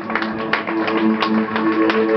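A string band playing live: held cello notes under a quick run of plucked string notes, several a second.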